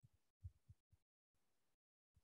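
Near silence, broken by a few short, faint low thumps, the clearest about half a second in.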